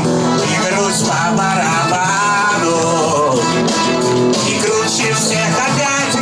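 A man singing a lively, upbeat song into a handheld microphone, amplified, over instrumental accompaniment with a steady beat.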